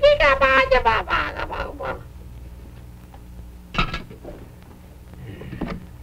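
A voice making a drawn-out wordless sound that slides down in pitch, then a brief vocal sound about four seconds in, over a steady low hum from the old kinescope soundtrack.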